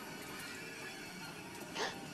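Quiet film soundtrack with faint background music; near the end a woman's short, breathy gasp.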